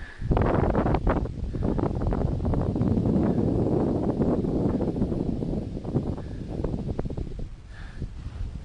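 Wind buffeting the microphone in loud, uneven gusts of low rumbling noise on an exposed snow slope.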